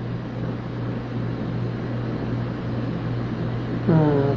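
Steady low hum under an even hiss: the constant background noise of the recording.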